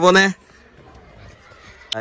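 A child's short, drawn-out call right at the start, then quiet car-cabin background with a single faint click near the end.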